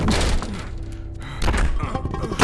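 Heavy crash of a window frame being smashed through, followed by a second heavy thud about one and a half seconds in, over dramatic background music.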